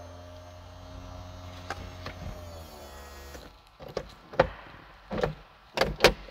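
Electric motor of the 2014 Chevrolet Camaro ZL1 convertible's power soft top humming steadily as the top closes, winding down about three seconds in. It is followed by a few sharp clicks and knocks as the top comes to rest.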